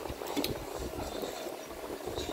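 A child slurping and chewing a mouthful of instant noodles, with wet sucking and mouth noises and a few sharp clicks about half a second in.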